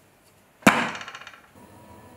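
A single sharp clatter of a hard object striking, about two-thirds of a second in, followed by a quick rattle that dies away within a second.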